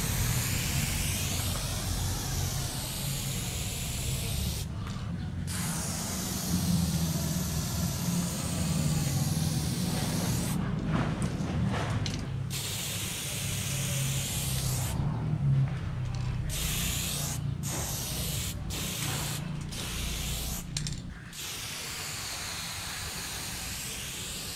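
Aerosol spray paint can hissing in long bursts as silver chrome paint is sprayed onto a wall. Short pauses break the spraying, and they come more often in the second half.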